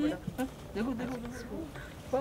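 Indistinct voices: low, broken talk among the people gathered around the children's table.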